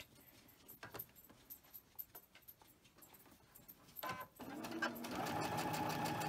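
Domestic sewing machine starting up about four seconds in and then running steadily as it stitches a seam; before that, only faint small clicks.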